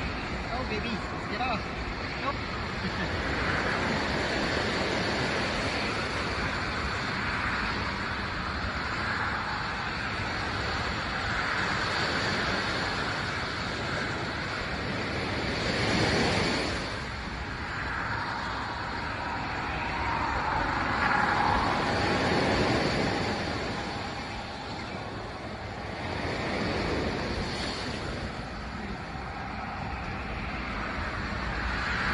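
Ocean surf washing on the shore: a steady rushing noise that swells and fades with the waves, loudest about halfway through and again a few seconds later.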